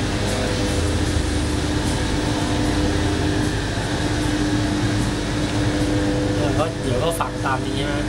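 Steady mechanical hum with a constant low tone, from a machine running in the room; a voice speaks briefly near the end.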